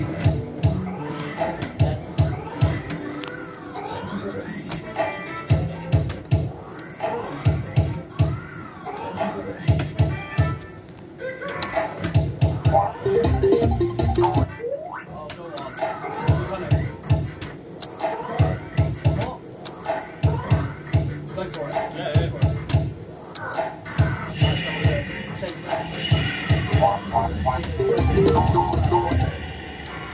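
Crazy Fruits fruit machine playing its electronic spin sounds and music through repeated spins of the reels: a low pulsing beat in short runs under quick rising and falling electronic tones.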